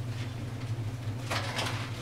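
Steady low electrical hum of room noise, with one brief, soft rustle about a second and a half in.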